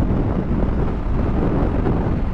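Steady wind rushing over the microphone of a Bajaj Dominar 400 motorcycle at expressway speed, around 100 km/h, with the bike's running and road noise mixed in low.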